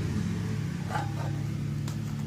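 A steady low mechanical hum runs throughout, with two faint short sounds, about a second in and near the end, as a bent steel piece is handled and set in place.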